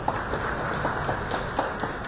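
Audience applauding: many hands clapping in a dense, irregular patter.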